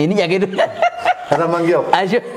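Men talking with chuckling laughter mixed into their speech.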